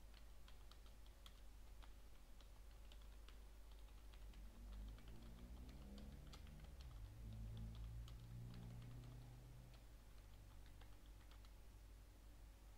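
Typing on a computer keyboard: a faint, irregular run of key clicks. A low hum swells underneath midway through.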